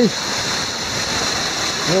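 Waterfall running with winter snowmelt: a steady, even rush of falling water.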